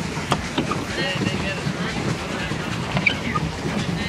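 Water splashing against a plastic pedal boat out on a lake, with wind on the microphone, faint voices in the distance and a few light knocks.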